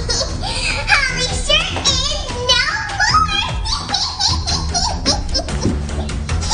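Background music with a child's high-pitched voice squealing and vocalizing over it, without clear words.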